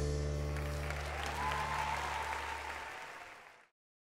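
A live band's final chord ringing out and dying away while the concert audience applauds; the sound fades out and stops about three and a half seconds in.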